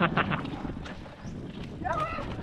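Mountain bike ridden fast over a dirt and rocky trail: steady tyre and wind noise, with rattling knocks and clatters from the bike over rough ground, sharpest right at the start.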